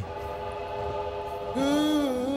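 A train whistle sounds one steady, held chord of several notes. About one and a half seconds in, a singing voice begins a song.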